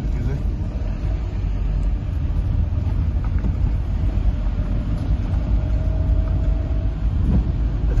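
Steady low rumble inside a car's cabin as it drives slowly over a rough, debris-strewn road, with tyre and road noise coming through the body.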